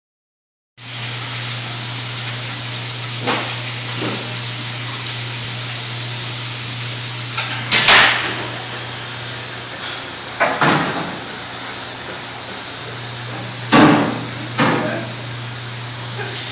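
Steady machine hum with a thin high whine, broken by several sharp knocks and bumps, the loudest about eight and fourteen seconds in.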